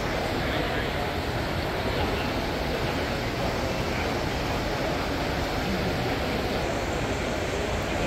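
Steady crowd chatter and general hubbub in a large indoor exhibition hall, many voices blending with no single one standing out.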